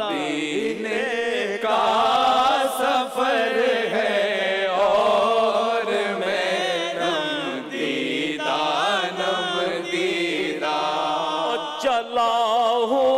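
A naat sung by an elderly man's solo voice in wavering, ornamented lines over a steady drone held by a group of men's voices.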